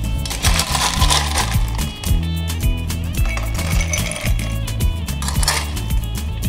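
Ice cubes scooped from a stainless steel bowl with a metal scoop and tipped clinking into cocktail glasses, in a rattling burst about a second in and another near the end, over background music.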